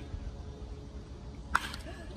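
A baseball bat striking a pitched ball: one sharp crack about one and a half seconds in, with a brief ring.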